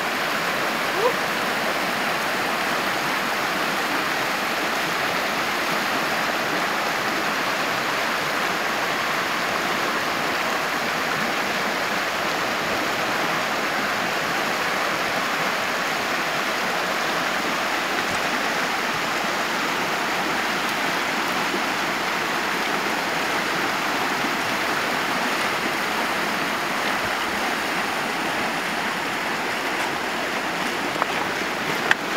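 Shallow river water running steadily over a riffle, an even rushing noise that does not change.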